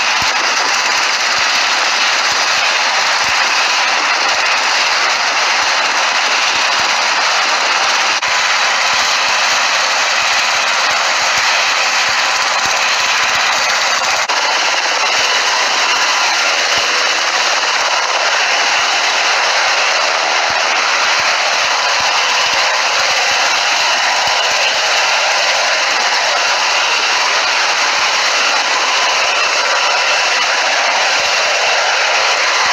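Sikorsky S-70i Black Hawk helicopter close by, its twin turboshaft engines and main rotor running steadily and loudly, with a fast rotor chop under the engine whine as it lifts off the runway into a low hover.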